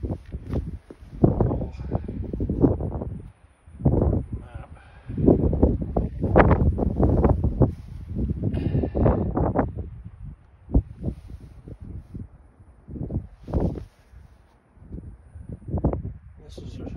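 Wind buffeting the microphone in irregular gusts, with a brief sharp click a little past the middle.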